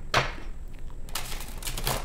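A new, slightly stiff tarot deck being side-shuffled by hand: card sliding against card, with a few sharp slaps of the cards near the start, about a second in and near the end.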